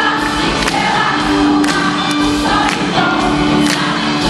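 Live band music with a female lead vocal singing held notes into a microphone over a steady beat.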